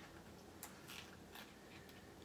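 Very faint fingernail picking and peeling of a paper planner sticker off its backing sheet, a few small clicks and scratches.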